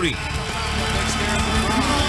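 Background music under steady noise from a basketball arena crowd, with a voice just starting near the end.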